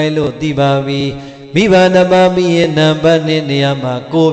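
A Buddhist monk chanting his sermon in a held, melodic voice, dwelling on long notes, with a short break about a second and a half in.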